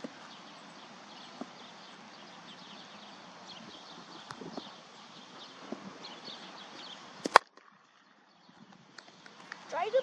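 A cricket bat striking the ball once: a single sharp crack about seven seconds in, the loudest sound, over a steady background hiss with faint high chirps and small ticks. The background drops out briefly right after the hit.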